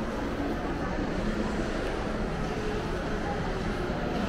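Steady indoor shopping-mall ambience: a low, even rumble of the hall with faint, indistinct voices of distant shoppers.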